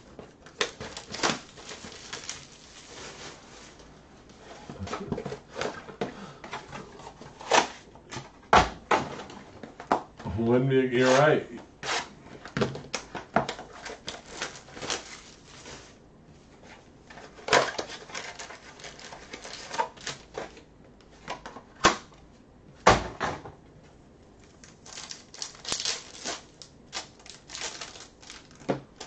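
Baseball cards being handled and sorted on a table: a string of sharp clicks, snaps and light rustles, irregular, with a brief bit of voice about ten seconds in.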